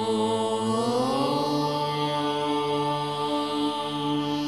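Devotional music with a sustained, chant-like tone. It starts abruptly, slides up in pitch about a second in, then holds steady.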